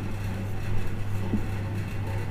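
A steady low hum runs under the faint scratch of a marker writing on a whiteboard.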